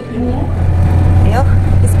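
Lada Niva driving, heard from inside the cabin: a steady, loud low engine and road drone that cuts in suddenly at the start. A voice briefly rises over it in the middle.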